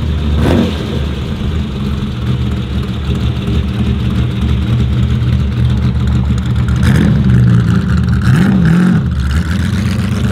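A 1957 Ferrari Testa Rossa replica's engine running as the car pulls away at low speed. There is a brief blip of revs about half a second in and two more near the end.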